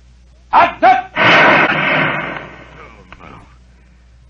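Firing-squad rifle volley from a radio-drama sound effect: one loud crash about a second in, following the shouted order, that rings out and fades over a second or so.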